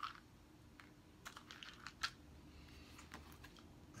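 Faint, scattered clicks and taps of board-game cards and pieces being handled on a tabletop, the sharpest about two seconds in, over quiet room hiss.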